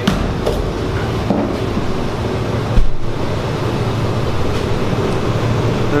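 A steady mechanical drone with a constant low hum, with one loud thump a little before halfway through.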